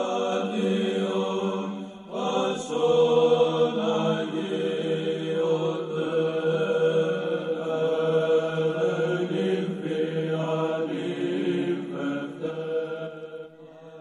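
Slow Orthodox church chant sung by low voices: long held melodic notes over a steady low drone, with a brief break about two seconds in. It fades out shortly before the end.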